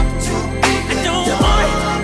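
R&B song playing, with a steady beat and deep bass.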